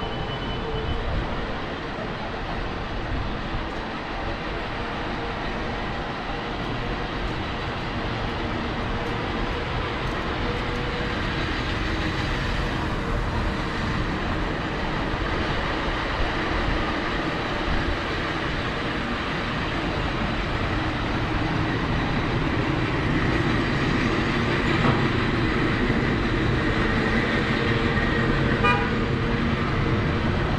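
City street traffic noise: cars passing, with horn-like held tones at times.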